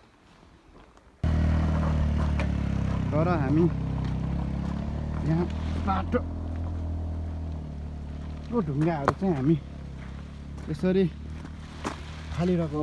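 A motorcycle engine running with a steady low hum that starts abruptly about a second in and slowly eases off, with voices calling out over it several times.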